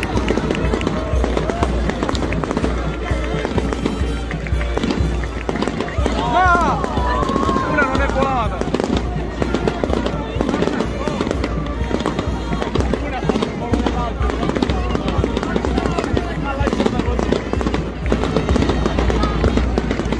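Firecrackers crackling continuously over a crowd's voices and a band playing, with loud wavering shouts about six to eight seconds in.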